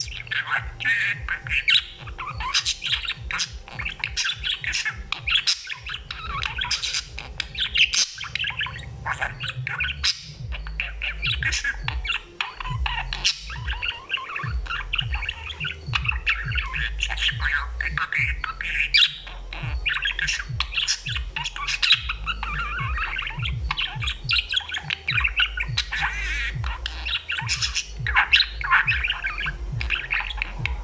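Budgerigar warbling and chattering without a break: a dense run of chirps, squawks and short clicks.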